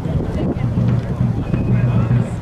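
Wind rumbling on the microphone over a steady low hum, with people talking in the background.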